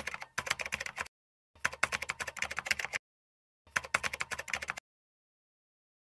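Computer keyboard typing sound effect: quick runs of key clicks in bursts of about half a second to a second and a half, separated by dead silence, stopping nearly five seconds in.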